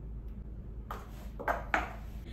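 Three sharp clicks, from about a second in, the last two the loudest and close together: high heels striking a tiled floor as she shifts her stance.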